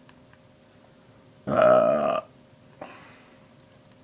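A man's loud burp about one and a half seconds in, lasting under a second, followed by a much fainter short sound about a second later.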